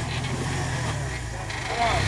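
Engine of a modified Jeep rock crawler running steadily at low revs as it creeps over boulders.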